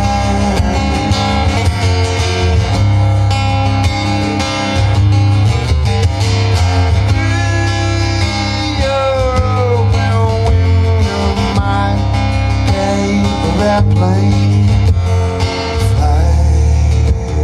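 Solo acoustic guitar strummed and picked in a live folk song, steady throughout, with a run of gliding, falling notes about halfway through.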